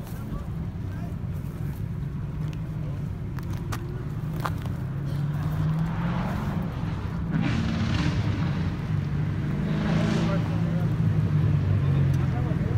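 A car engine running steadily at low revs. Louder rushes of traffic going by come in the second half, about six, seven and a half and ten seconds in.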